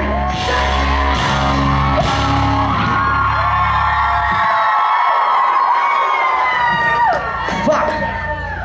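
A live rock band plays the last bars of a song with singing. About halfway through, the drums and bass stop, leaving long held voices and the crowd yelling and whooping.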